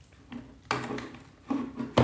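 Plastic knocks and scrapes of a mains cable and plug being handled and pushed into a power supply, with a sharp, loud click at the end.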